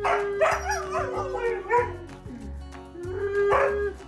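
A husky howling in wavering calls that rise and fall in pitch for about two seconds, with a shorter call near the end, over background music with a held note.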